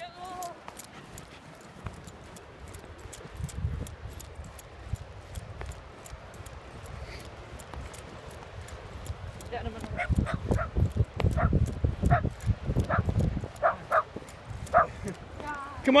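Wind rumbling on the microphone while a person runs across soft sand. In the second half, a string of short, high calls comes from a distance.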